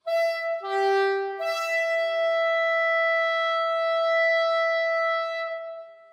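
Soprano saxophone entering suddenly out of silence: a short note, a lower note, then a long high note held for about four seconds that fades away near the end.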